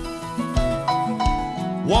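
Country band playing a short instrumental gap between sung lines, with a steady drum beat, bass and guitars. The lead vocal comes back in just before the end.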